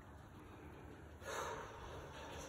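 A person's short breathy gasp about a second in, over faint room tone.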